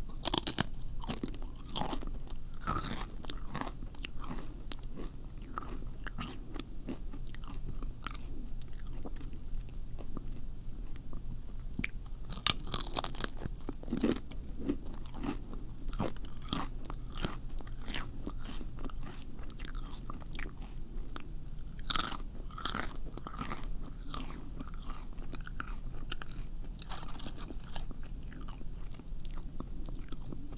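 Close-miked crunching and chewing: irregular crisp bites and crackles, as of crunchy food being eaten into a sensitive microphone, with a faint steady low hum underneath.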